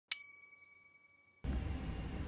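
A single bright ding chime, struck once and ringing down over about a second. It cuts off sharply and a steady low rumble of background noise begins.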